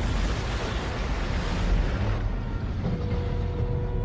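Film sound effects of a ship's hull breaking in half: a loud, deep rumbling crash that thins out about two seconds in. A steady held tone comes in about three seconds in.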